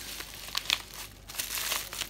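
Black plastic packaging wrap crinkling and rustling as it is pulled off a small boxed charger, with a few sharper crackles.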